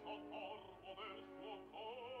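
Operatic singing with wide vibrato over sustained orchestral chords, from a classical opera recording.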